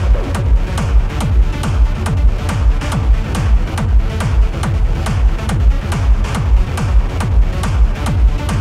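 Techno played in a DJ set: a steady four-on-the-floor kick drum at about two beats a second over deep bass.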